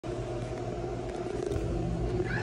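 A steady low mechanical hum with several held tones: restroom room tone from running building machinery.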